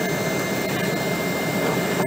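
Embraer ERJ 195's GE CF34 turbofans and airflow heard from inside the passenger cabin as a steady, even roar while the jet climbs out after takeoff, with a thin steady whine riding on top.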